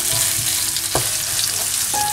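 Onion and coconut paste sizzling steadily in hot oil in a nonstick frying pan as it is stirred with a slotted spatula, with a knock of the spatula against the pan about a second in.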